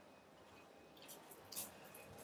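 Near silence: faint room tone with one soft, brief sound about one and a half seconds in.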